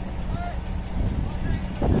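Heavy diesel engine of a Caterpillar crawler bulldozer running with a steady low rumble, with wind on the microphone.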